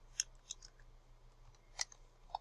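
Computer keyboard keystrokes: a few separate, faint, sharp clicks, the loudest near the end.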